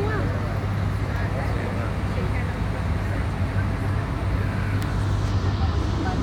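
Open-top tour bus moving through city traffic, heard from its upper deck: a steady low engine hum under even road and traffic noise, with faint voices in the background.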